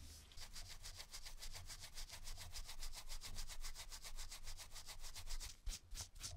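A small brass lighter part rubbed by hand with a dark fibrous pad in fast, even strokes, about six or seven a second. There is a brief pause with a light knock near the end.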